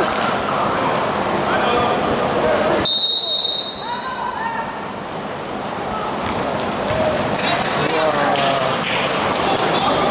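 Basketball game in an echoing gym: voices and ball bounces, cut about three seconds in by one short, high, steady referee's whistle blast stopping play. The noise drops for a few seconds after the whistle.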